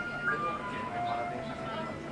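Coffee-shop ambience: background music with long held notes playing, over indistinct customer chatter.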